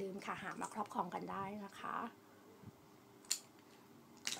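A woman talking for about two seconds, then a quiet stretch with a single short click a little past three seconds in.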